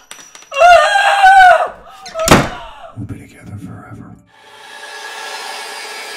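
A woman's loud, high-pitched scream from behind a taped gag, lasting about a second, then a single heavy thunk like a closet door slamming shut. Near the end a steady droning hum sets in.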